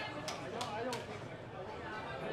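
Candlepin bowling alley din: background chatter of players and spectators, with a quick run of sharp wooden clacks from the lanes in the first second.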